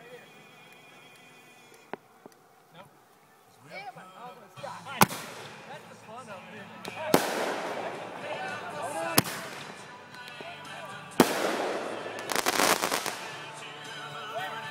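Aerial fireworks going off: four sharp bangs about two seconds apart, then a quick run of crackling cracks near the end.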